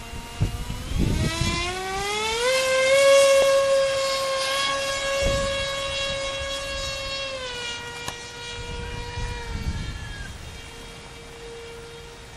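Whine of a FunJet RC model jet's electric motor and propeller. Its pitch rises over the first couple of seconds as it throttles up, holds steady, then drops slightly about seven and a half seconds in.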